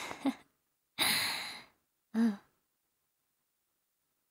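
A young woman's soft breathing and sighing: a short breath at the start, a breathy sigh about a second in that fades out, and a brief voiced sound just after two seconds.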